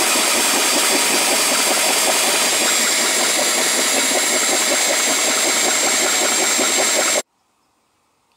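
Power drill driving a hole saw through the side panel of a gas locker, a steady grinding cut with a thin high whine. It cuts off suddenly about seven seconds in.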